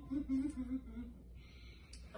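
A person humming a few short notes that drift slightly down in pitch, stopping about a second in.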